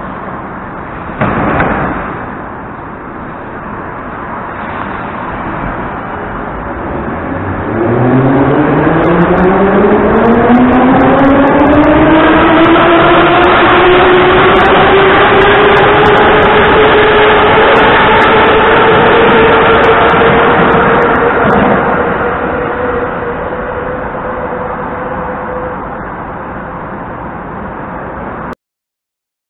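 Moscow Metro 81-717 series train pulling out of the platform: its traction motors whine, rising in pitch as it gathers speed and then levelling off, loudest as the cars pass and fading as it leaves. A short loud burst about a second in.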